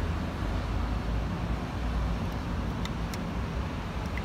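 Steady low background rumble, with a few faint light clicks about two to three seconds in.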